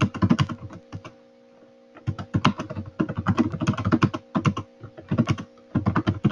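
Typing on a computer keyboard: quick runs of keystrokes with a pause of about a second near the start, over a faint steady hum.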